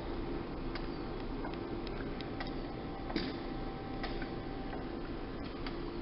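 Dräger Primus anaesthesia machine running its automatic self-check: a steady faint hum with scattered, irregular faint ticks.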